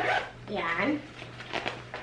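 The zipper of a light fabric tripod carry bag being pulled open, with a short vocal sound about half a second in.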